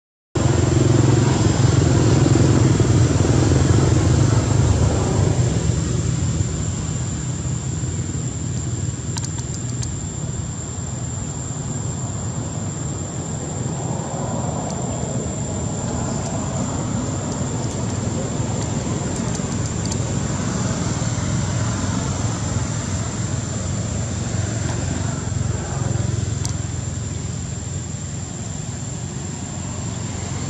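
A motor vehicle's engine running steadily in the background, a low rumble that is loudest in the first few seconds and then eases off a little.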